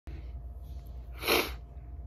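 A single short, breathy burst from a person about a second and a quarter in, over a steady low hum.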